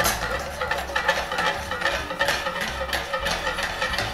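Onion-and-leek stuffing base with white wine and reduced poultry stock simmering and sizzling in a frying pan over a gas flame. It makes a steady crackle of small pops over a low hum.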